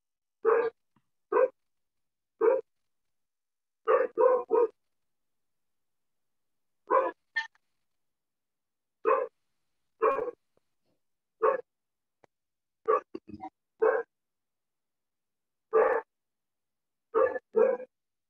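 A dog barking repeatedly: short single barks and quick runs of two or three, a second or two apart, over video-call audio that drops to silence between barks.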